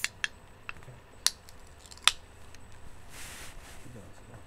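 Handling noise as the recording device is moved: a handful of sharp clicks and taps in the first two seconds, then a short hiss about three seconds in.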